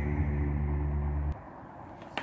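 The closing soundtrack of a promotional video, heard through a screen's speakers: a held low chord that cuts off abruptly about a second and a half in, leaving faint room noise.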